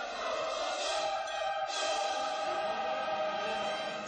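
A choir singing held chords in classical concert music. Near the end a deeper, fuller accompaniment comes in.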